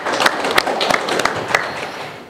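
Audience applauding, a dense patter of many hands clapping that fades away near the end.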